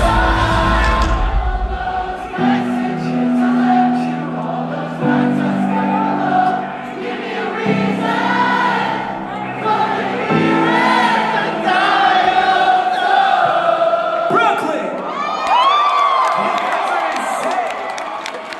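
Live rock concert: the full band drops out about two seconds in, leaving sustained chords that change every couple of seconds under many voices singing along. Near the end the crowd cheers and whoops.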